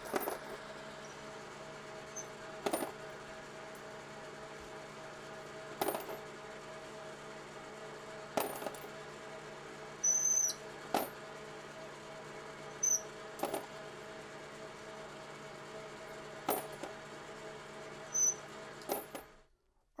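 1955 Logan 11x36 metal lathe running with a steady hum while an inside chamfer tool in its collet cuts the mouths of .308 Winchester brass cases. Brass cases clink sharply about every two to three seconds, with a few short high squeaks. The sound cuts off suddenly near the end.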